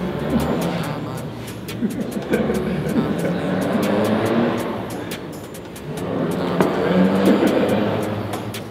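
Voices talking over a steady low hum, with light clicks throughout.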